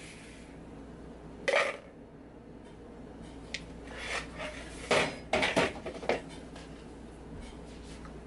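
A bowl and a metal spoon knocking and clinking against a glass mixing bowl as a dry crumb mixture is emptied into it. There is one knock about a second and a half in, then a run of clinks and scrapes around five to six seconds in.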